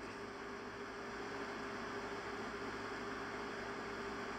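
Steady hiss with a faint, unchanging hum underneath: the background room tone of a phone microphone, with no speech.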